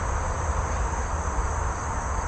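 Insects chirring steadily in a high, even band over a low, constant rumble.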